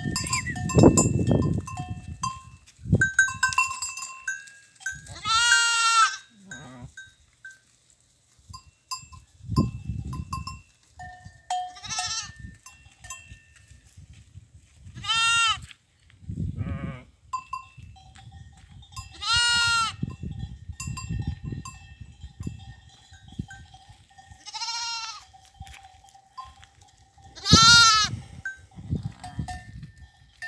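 Goats bleating, about six long quavering bleats spaced a few seconds apart, with the steady ringing of livestock bells coming and going. A few low rumbles come in between, the loudest about a second in.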